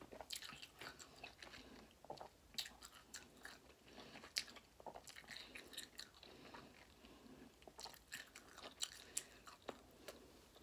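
Faint close-up mouth sounds of a person biting and chewing a citrus wedge with salt and hot sauce: scattered wet smacks, clicks and small crunches from the tough rind.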